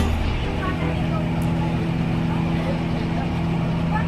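Passenger ferry's engine running with a steady drone, heard from inside the seated cabin, with hull and water noise underneath.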